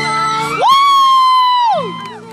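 A person's loud "woo" whoop: the voice jumps up in pitch, holds for about a second, then slides down.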